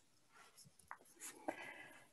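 Near silence: quiet room tone over the call, with one faint click a little before halfway and soft faint rustling in the second half.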